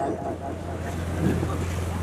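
Steady low electrical hum with an even background hiss from an amplified headset-microphone sound system, heard in a pause between spoken sentences.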